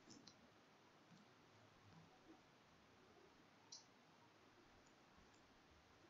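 Near silence with a few faint computer mouse clicks: two in quick succession at the start and one more about three and a half seconds in.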